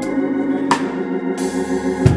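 Electric organ holding a sustained chord, with a single drum-kit hit about two-thirds of a second in. Near the end a cymbal wash and a low bass note come in.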